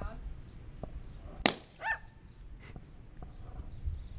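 A balloon bursts with a single sharp bang about one and a half seconds in, followed at once by a short cry. A low wind rumble on the microphone runs underneath.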